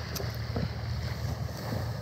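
Steady low wind rumble on the microphone of a body-worn camera.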